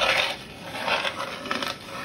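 Hands moving over a painted wooden coin-slide board, a few soft scrapes with a couple of light clicks on the wood about three-quarters of the way through.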